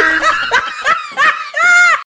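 High, sped-up chipmunk-style laughter: three short snickers, then a longer laugh near the end.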